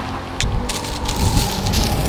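Wind rumbling on the microphone, with the dry rustle of a dead palm frond being picked up off gravel.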